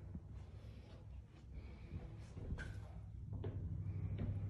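Footsteps and small handling knocks at irregular intervals over a steady low hum, as someone walks with the camera through an empty room.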